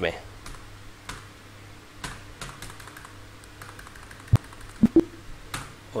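Computer keyboard keys tapped at an uneven pace while data is entered into an accounting form. The taps are scattered, with a few sharper ones about four to five seconds in.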